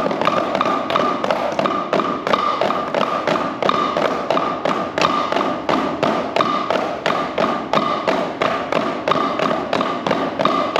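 Drum practice pads struck with wooden drumsticks by a small group in unison, an even, steady stream of sharp taps with a pitched ring, playing paradiddles (single strokes mixed with doubles).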